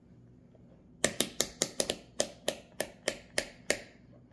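Rotary selector dial of an AstroAI AM33D digital multimeter being turned to the off position, clicking through its detents: about a dozen sharp clicks at roughly four a second, starting about a second in.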